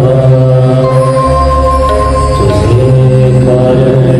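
Devotional bhajan chanting with harmonium accompaniment: a sung voice moves over a steady low drone, with a long held note in the middle.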